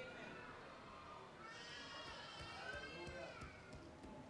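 A faint, drawn-out, wavering cry about two seconds long, starting about a second and a half in, heard against a quiet room.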